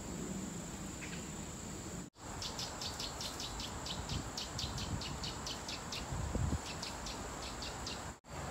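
Forest insects calling: a steady high-pitched drone, and after a short break about two seconds in, a rapid run of chirps about five a second, with a brief pause near the end.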